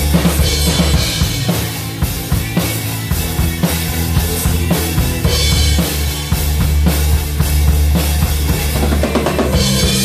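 Acoustic drum kit played in a steady rock groove of bass drum, snare and cymbals over a music track with sustained low bass notes. There are bright cymbal crashes about half a second in, about halfway through and at the end.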